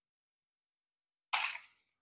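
A man's single short, breathy throat noise, like a small cough or throat clearing, about one and a half seconds in, after near silence.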